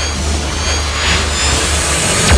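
Intro sound design: a swelling whoosh over a deep bass drone, growing louder and brighter as it builds toward a hit.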